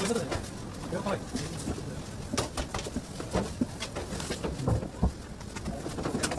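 Indistinct, low murmuring voices with scattered sharp clicks and knocks.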